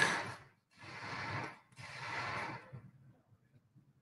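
A man breathing out twice, two soft breaths of under a second each, with a short pause between them.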